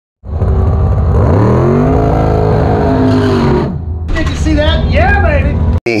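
Race car engine running hard, its pitch climbing and then holding for about three and a half seconds, followed by a voice and an abrupt cut.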